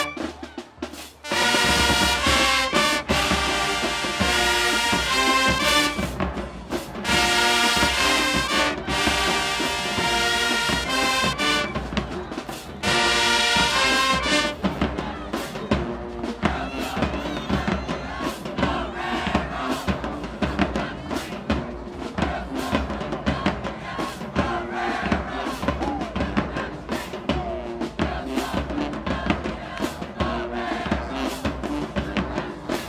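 High school marching band playing: the brass section blasts loud held chords broken by short stops for the first half, then about halfway through the music shifts to a steady drum beat under quieter horn lines.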